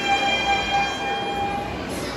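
Alto saxophone solo with concert band accompaniment, holding one long steady high note that ends shortly before the melody moves on.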